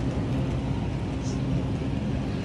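Steady low rumble and hum of a supermarket's background noise.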